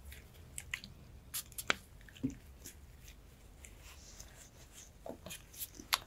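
Cuticle nippers snipping thick cuticle skin at the edge of a toenail: a handful of faint, small clicks and crunches, in a cluster about a second in and again near the end.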